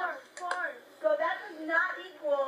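Indistinct high-pitched voices talking, with two short sharp clicks about half a second in.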